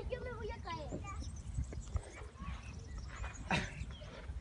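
A high voice talks or calls in the first second, then fainter voices over a steady low rumble, with one brief knock about three and a half seconds in.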